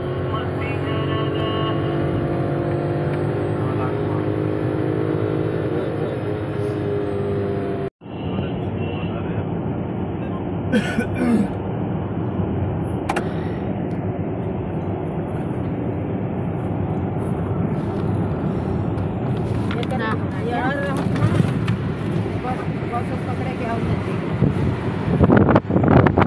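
Music with singing plays from a car stereo inside a moving car for about the first eight seconds, then cuts off suddenly. After that there is the steady road and engine noise of the car driving, with a few brief voices, growing louder and more uneven near the end.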